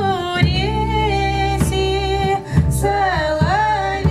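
A folk song sung live by women's voices, the melody gliding between notes, over an acoustic bass guitar holding low notes.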